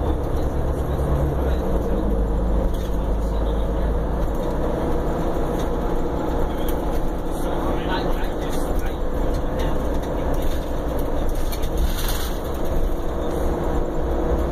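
Cabin noise inside a 2015 Prevost coach under way: a steady low engine and road rumble.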